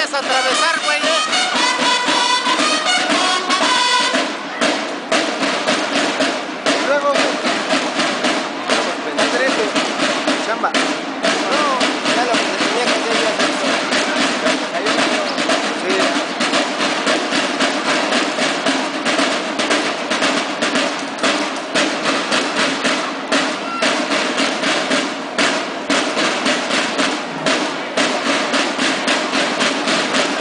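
Banda de guerra: bugles play a brass phrase that stops about four seconds in, then the snare drums carry on alone with a fast, steady marching cadence and rolls.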